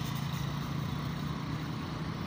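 Road traffic: cars driving past, with a steady low engine hum under the noise of the road.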